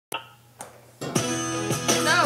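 Guitar music: two single sharp notes, then from about halfway a held chord struck several times.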